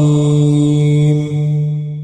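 Melodic Qur'an recitation (murottal): the reciter's voice holds one long, steady note at the close of the verse. It begins to fade near the end.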